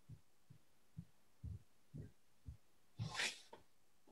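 Faint soft low thumps, about two a second, picked up on a headset microphone, then a short, louder breathy noise about three seconds in.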